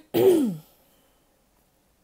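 A person clearing their throat once: a short rasping sound, falling in pitch, about half a second long.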